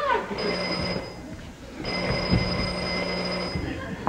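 Telephone ringing twice, a short ring and then a longer one.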